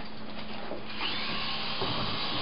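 Small electric motor and rotor blades of a toy remote-control Apache helicopter whirring steadily in flight, the whine rising a little about a second in.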